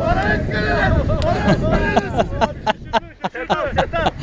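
Players' voices calling out over a low rumble of wind on the microphone; in the second half, a quick run of sharp clicks and knocks.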